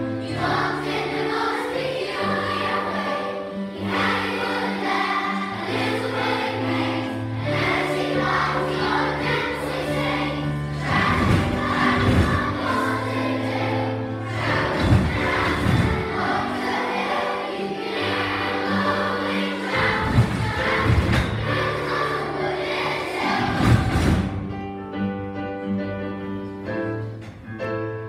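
Large children's choir singing two partner songs at once over instrumental accompaniment, with a few low thumps in the second half. Near the end the singing stops and quieter instrumental notes carry on.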